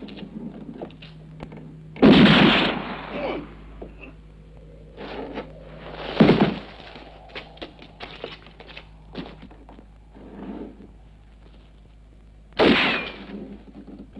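Three loud revolver shots, about two seconds in, about six seconds in and near the end, each trailing off in an echo, with lighter knocks in between.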